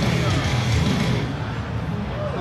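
Live guitar song with vocals, two guitars playing hard rock; the top end thins out a little after a second in.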